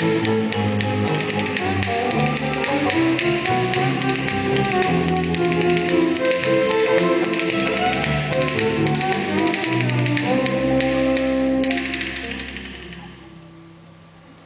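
A small live band with a violin plays a tune over fast, steady percussion tapping. Shortly before the end the tapping stops and the music fades away quietly.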